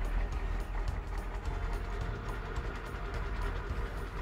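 Truck engine running as the truck crane drives in, a continuous rumbling vehicle sound effect over background music.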